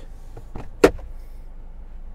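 A single sharp plastic click a little under a second in, with a fainter tick just before it: the latch of the glove box releasing as it is pulled open.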